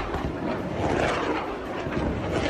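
Steady rushing roar of an aircraft flying overhead, with no break in it.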